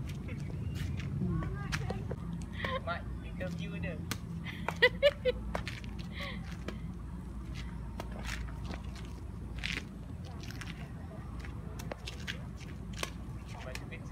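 Badminton rackets striking a shuttlecock in a rally: sharp clicks at irregular intervals, roughly a second apart. Brief children's voices come in during the first few seconds.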